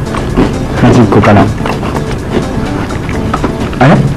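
Background music playing steadily, with a short stretch of a voice about a second in.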